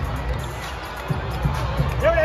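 A basketball dribbled on the hardwood court: repeated low bounces a few tenths of a second apart, over arena crowd noise and music.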